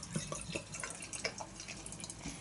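Beer being poured from a glass bottle into a tilted glass: a soft trickle of liquid with many small ticks of splashing and fizz.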